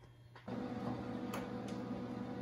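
After about half a second of near silence, a steady machine hum sets in, with two light ticks near the middle.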